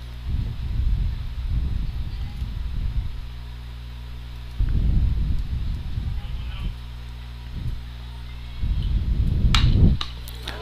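Steady low hum with stretches of low, muffled rumble that come and go. Near the end comes a single sharp crack: a softball bat hitting the ball, a line drive that is caught at third base.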